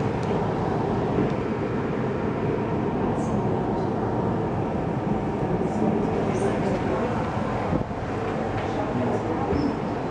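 Steady background noise with indistinct voices mixed in.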